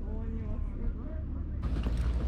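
Wind buffeting the microphone with a steady low rumble, under faint voices talking some way off. Near the end the wind gets louder and sharp clicks come in.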